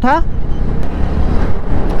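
Motorcycle running along a highway at a steady speed: continuous low engine and road noise mixed with wind on the microphone.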